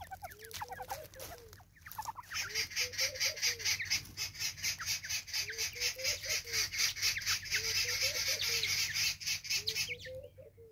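Natal spurfowl giving its raucous call: a fast, harsh, rhythmic series of about six notes a second that starts about two seconds in, grows loud and runs on without pause. A lower, softer call repeats underneath every second or two.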